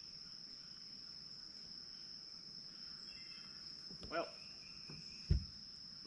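Insects in the trees droning steadily at one high pitch. A brief pitched, voice-like sound comes about four seconds in, and a dull thud near the end.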